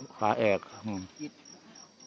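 Insect chirping in a steady, high-pitched pulsing rhythm of about four to five chirps a second.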